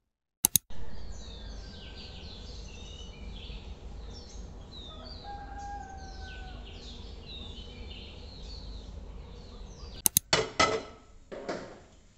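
Outdoor ambience: many birds chirping in short, quick calls over a low steady rumble. A sharp click comes just after the start, and a few clattering knocks come near the end.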